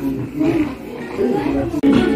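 A man's voice in short, low-pitched stretches, with a sharp click near the end.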